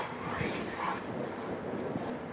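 Chopped onion frying in a tablespoon of hot oil in a pan, a faint steady sizzle as it is stirred with a spatula.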